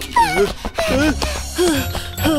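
Cartoon character's voice making short wordless sounds, about four of them, each dipping and rising in pitch, over a background music bed.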